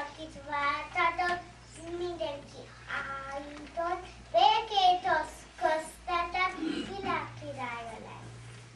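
A little girl's solo voice performing a verse in a sing-song way, in short phrases with brief pauses between them.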